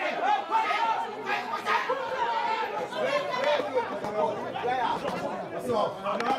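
Several people's voices talking and calling out at once, overlapping chatter with no single clear speaker.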